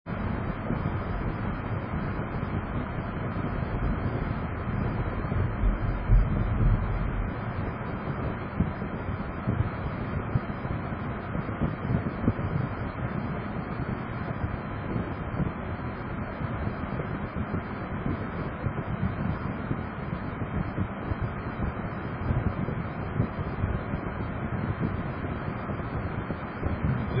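Steady road and engine noise inside a car's cabin, picked up by a dashcam microphone, as the car drives along and slows to a stop.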